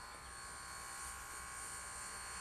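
A steady low buzz with faint hiss, holding several unchanging tones.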